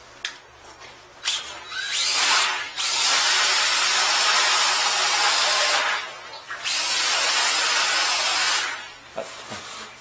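Cordless drill driving a flexible drain-cleaning cable, run in three bursts of a few seconds each with short pauses between.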